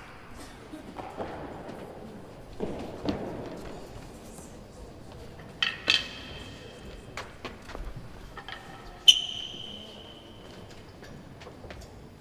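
A few scattered knocks and clicks echoing around a large indoor real tennis court. Loudest is a sharp metallic ping about nine seconds in that rings on for about a second.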